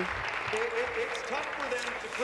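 Members of a legislature applauding: steady hand clapping from many people, with a voice faintly under it.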